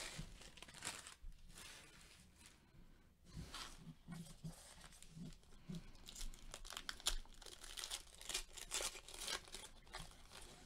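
Shiny foil wrapper of a Panini Diamond Kings trading-card pack being torn open and crinkled by gloved hands, in faint irregular crackles that grow busier in the second half as the cards are pulled out.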